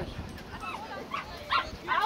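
Dog barking several short, sharp barks while running an agility course.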